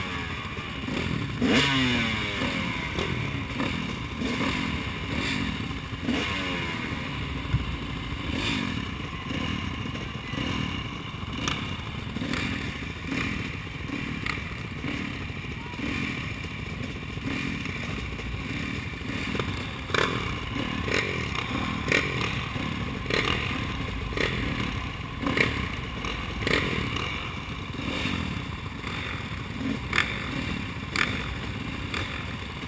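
Several motocross dirt bikes running on the starting line, engines idling with throttles blipped now and then, plus occasional knocks and rattles close to the helmet-mounted microphone.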